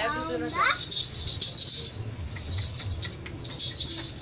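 Metal ankle bells on a cow's legs jingling in irregular clatters as the animal is led and shifts its feet.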